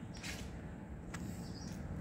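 Birds outdoors: a brief harsh rasping burst about a quarter second in and a short high chirp near the end, over a steady low rumble of wind and ambience.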